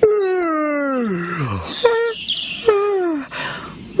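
Cartoon character voices groaning: one long falling groan, then two shorter vocal calls and a brief high chirp about two seconds in. It is a dismayed reaction to being told there is a lot more repair work tomorrow.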